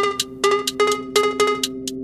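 Minimal techno in a sparse passage: a pattern of short, pitched, cowbell-like percussion hits, with the deep bass thinned out.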